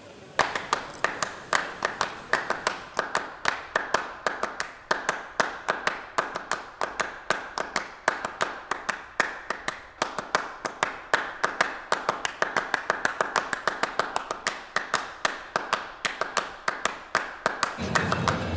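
A rapid run of sharp claps, several a second, starting suddenly about half a second in and keeping an uneven rhythm.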